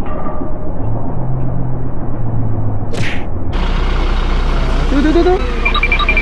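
A motor vehicle engine rumbling steadily, with a short hiss about three seconds in, after which the rumble becomes louder and fuller.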